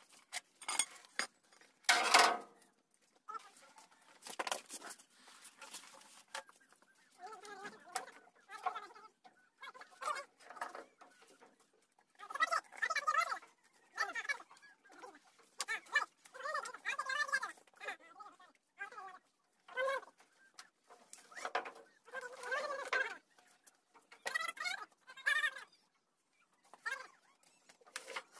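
Short bursts of bird calls, repeated many times with gaps between, and one loud sharp knock about two seconds in.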